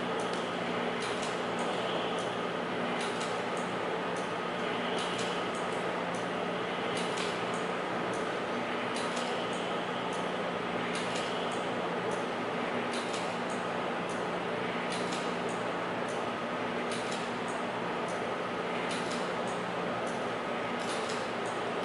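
Coil-winding rig turning a large Tesla coil secondary form as magnet wire is laid on: a steady motor hum with a faint click roughly every two seconds.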